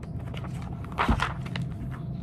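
The page of a hardcover picture book being turned and the book handled, with one soft thump about a second in, over a steady low hum.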